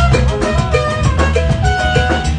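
Live Latin jazz from a small band, with trumpet, congas, electric bass and drum kit playing a steady groove of short repeated melodic figures over a strong bass line.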